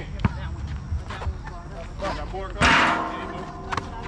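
A basketball bouncing on an outdoor concrete court, a few separate knocks, with players' short calls mixed in. About two and a half seconds in comes a louder, longer burst of noise.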